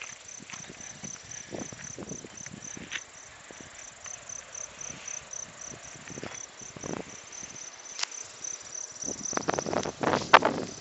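An insect chirping in a steady, even rhythm of about four high-pitched chirps a second. Scattered clicks and knocks sound over it and grow denser near the end.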